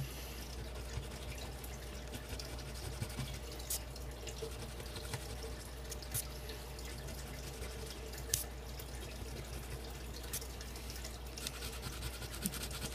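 A coin scratching the coating off a paper lottery scratch-off ticket: faint scraping with a few sharp little clicks, over a steady background hiss.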